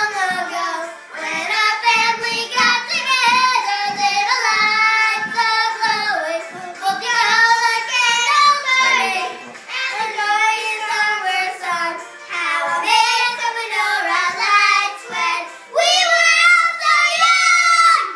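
Two children, a girl and a young boy, singing a Chanukah song together in phrases with short breaks, ending on a loud held phrase.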